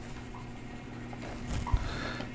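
Faint scratching of a stylus on a drawing tablet over a steady low electrical hum, with a soft knock near the end.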